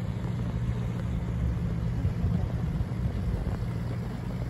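Narrowboat's diesel engine running steadily as the boat passes under way, a low, even hum.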